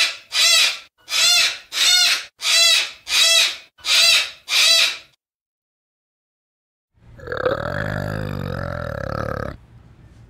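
Sulphur-crested cockatoo calling: eight evenly spaced calls, about two a second, that stop about five seconds in. After a pause of about two seconds comes a low, rumbling animal call lasting about two and a half seconds.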